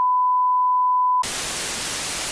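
A steady, single-pitched electronic beep tone that cuts off about a second in, replaced by the even hiss of TV static.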